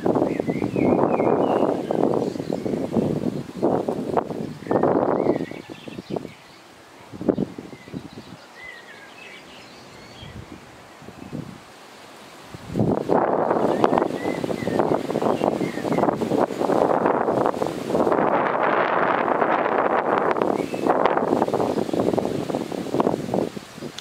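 Wind gusting through grass and foliage close to the microphone, a loud rustling that drops to a lull for several seconds in the middle and picks up again. Birds chirp faintly in the background.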